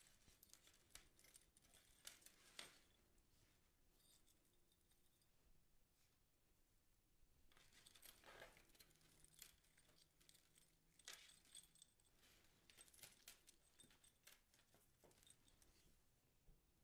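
Near silence, with faint scattered rustles and small clicks of wired pip berry stems being worked into a grapevine wreath.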